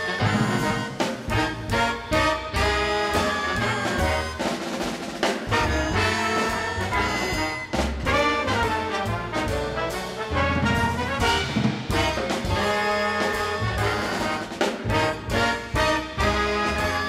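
Recorded big-band jazz played back over loudspeakers: the full band, horns to the fore, plays an arranged ensemble passage with no soloist.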